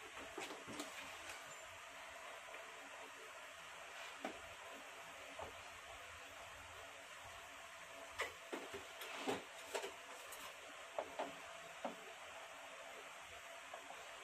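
Light, scattered knocks and taps of a hard plastic battery lid being set onto a tubular battery box and pressed into place, over a steady faint hiss. The clearest knocks come in a cluster about eight to twelve seconds in.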